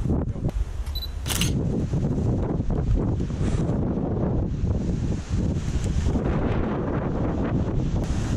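Wind rumbling on the microphone throughout, with a phone camera's shutter click about a second in.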